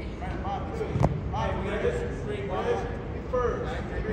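Indistinct voices in a gymnasium, with one sharp thump about a second in.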